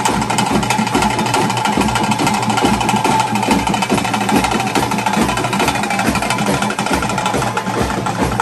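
Fast, dense ritual drumming: a continuous rapid roll over low drum beats about three a second, with a wavering high note held above it.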